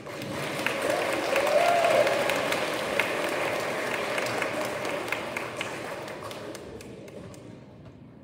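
Audience applauding, a crowd of hands clapping in a large hall. It swells over the first two seconds and then fades out gradually near the end, with one voice calling out over it about a second and a half in.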